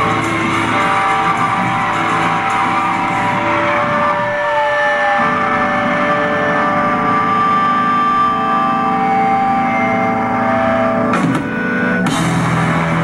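Rock music with electric guitar: held chords and notes, with a falling bend about four seconds in.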